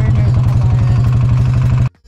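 Golf cart motor running while driving, a steady low drone with a fast, even pulse; it cuts off suddenly near the end.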